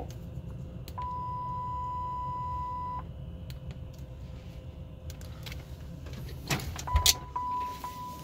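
Bombardier Global Express cockpit aural warning system under test: a steady warning beep about a second in that holds for two seconds, then a second, broken beep near the end. A few sharp clicks and a knock come just before the second beep and are the loudest sounds. A steady low hum runs underneath.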